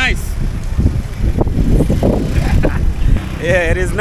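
A small motorbike riding off along a paved street, heard as a loud low rumble; a man's voice comes in near the end.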